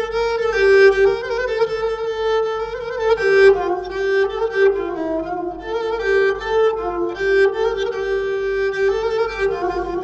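Kabak kemane, a Turkish gourd spike fiddle, bowed in a continuous folk melody, its notes flowing one into the next in the middle register with no singing.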